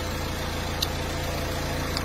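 Renault Mégane 3 dCi diesel engine idling steadily, with a faint steady whine over it and a single light click just under a second in.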